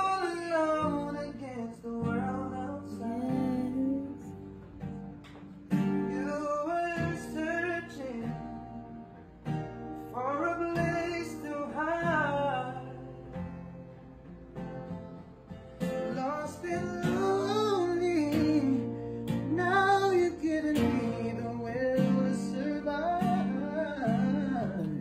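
A man singing over a strummed acoustic guitar, his sung line bending up and down in runs.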